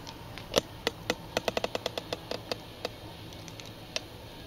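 Campfire crackling: a run of sharp, irregular pops and clicks, thickest in the first three seconds and then thinning out.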